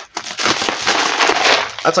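Knife slicing open a plastic poly mailer: a dense, crackling tear of the plastic lasting most of two seconds.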